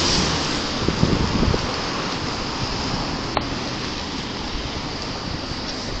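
Steady rushing noise of wind on a body-worn camera's microphone, mixed with street traffic at an intersection, slowly easing off. A single sharp click about three and a half seconds in.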